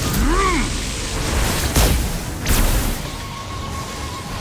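Battle sound effects under a film score: a low rumble, a short rising-then-falling pitched cry just after the start, and two sharp blasts about two seconds in, half a second apart.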